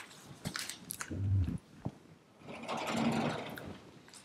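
Sheets of paper being handled and set down on a desk: light rustles and ticks, a dull thump about a second in, then a longer rustle or scrape of paper on the desk.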